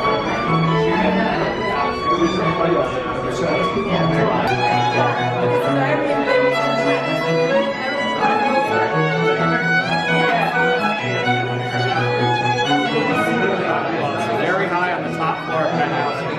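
String music: a violin melody over held low bowed notes that change every second or two, with the chatter of a crowd of guests underneath.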